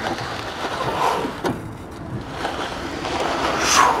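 Prowler sled being dragged and twisted across rubber floor tiles, its skids scraping in a noisy rush that swells with each pull and is loudest near the end.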